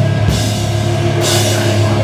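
Hardcore band playing live and loud: distorted electric guitar, bass guitar and drum kit. A cymbal wash comes in a little past halfway.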